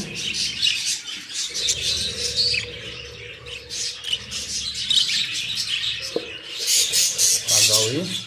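Budgerigars chattering and chirping continuously in high-pitched calls, many birds at once.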